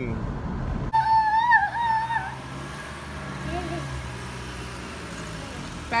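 Car engine running steadily at idle. About a second in, a high wavering whine sounds for about a second, with a shorter faint one midway.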